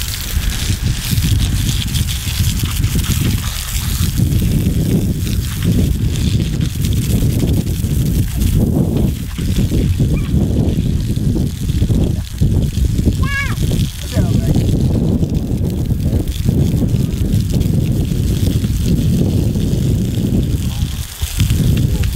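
Garden hose spray nozzle hissing and splashing water onto muddy cassava roots and concrete, washing the mud off. Heavy, gusting wind rumbles on the microphone throughout.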